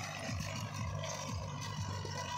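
Tractor engine running steadily, with a low pulse repeating about three to four times a second underneath.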